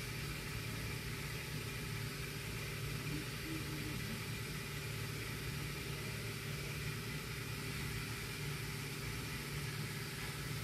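Car engine idling, a steady low hum with no change in speed.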